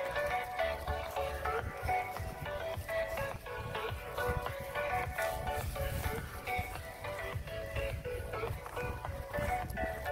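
A song played at high volume on a JBL PartyBox 300 portable party speaker: a melody over a steady beat with heavy bass.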